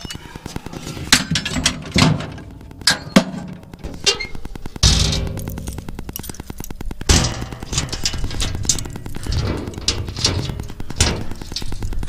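A homemade steel tool box on a tractor being handled: its sheet-metal lid is swung shut and latched, and the other side's lid is opened. There are a series of knocks and clanks, a longer scraping stretch in the middle, and a loud metal bang about seven seconds in.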